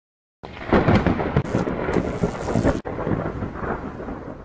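Thunder with rain, starting about half a second in, with a brief break near three seconds, then fading.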